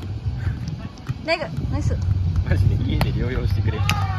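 Beach volleyball rally: players' short shouts and calls, with a sharp slap of a hand striking the ball near the end, over a steady low rumble.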